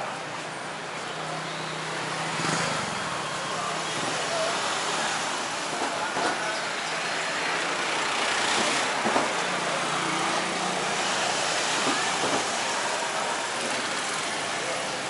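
Night street traffic: cars, a songthaew pickup and motorbikes running and passing, a steady wash of road noise with low engine hums coming and going.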